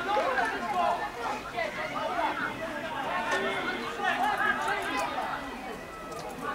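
Several people talking over one another and calling out, an indistinct crowd chatter with no single clear voice.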